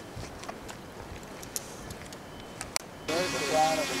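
Faint outdoor background with a few soft clicks. About three seconds in, a multirotor drone's propellers start a steady whine, and a voice calls over it.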